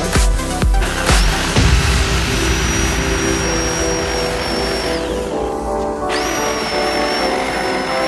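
Background music with a steady beat, over which a corded reciprocating saw cuts into a wooden post. The saw runs twice, from about a second in to about five seconds and again from about six seconds, a steady high whine that falls away each time it stops.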